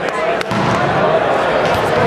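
Several people talking at once in a gym, with one sharp smack about half a second in.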